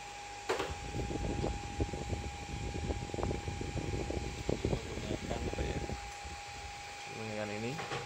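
A 12 V 500 W power inverter running with no load, giving a steady high-pitched electrical whine. Irregular crackling and rustling with small clicks runs over it until it quietens about six seconds in.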